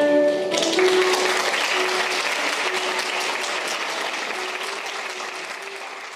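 A held sung note ends about half a second in, and audience applause takes over, slowly dying away, with quiet sustained instrumental notes underneath.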